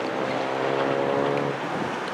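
Long double-stack intermodal freight train rolling past, a steady low engine drone over the rumble of the cars, easing slightly near the end.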